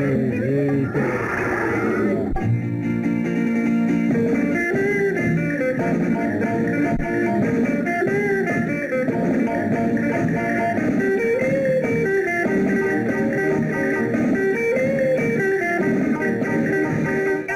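Instrumental interlude of an old Tamil film song: a lively melody over a bass line, with no singing.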